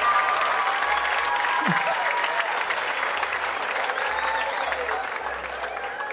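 Audience applauding in a sustained round, with a few voices calling out in the crowd; the clapping slowly fades toward the end.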